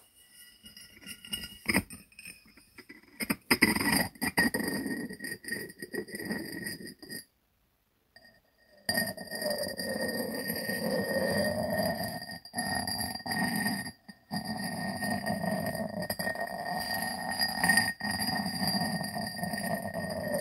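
Glazed ceramic lid twisted and rubbed round on the rim of a ceramic jar: a continuous grinding scrape with a steady ringing tone in it. It is preceded by a few light clicks and broken by a short pause just before halfway.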